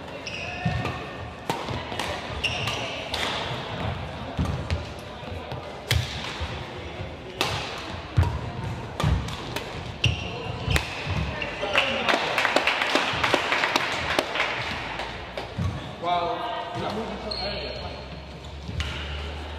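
Badminton rally in a sports hall: sharp racket strikes on the shuttlecock, and shoes squeaking and thudding on the court. Voices follow in the hall between points.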